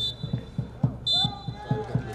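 Referee's whistle blowing for full time: a short blast, then a longer one about a second in. Under it runs a fast, even series of low thumps.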